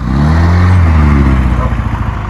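Motor scooter engine revved once, its pitch rising and then falling back over about a second and a half. The scooter has just been repaired and is running again.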